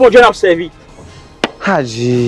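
A voice that trails off in the first half-second, a short pause, one sharp click about one and a half seconds in, then a long drawn-out voice note that starts near the end, dips and holds steady.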